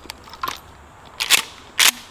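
Pump-action slide of a Mossberg Shockwave 12-gauge being racked: two sharp metallic clacks about half a second apart, the slide going back and then forward. A few faint handling clicks come before them.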